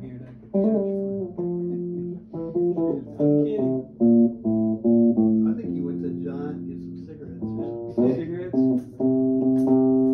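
Guitar playing a run of single sustained notes and short phrases. Each note starts sharply and holds a steady pitch for up to about a second and a half.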